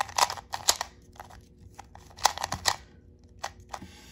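Plastic 2x2 puzzle cube being turned by hand: quick, irregular clicks and clacks of the layers snapping round, coming in small clusters.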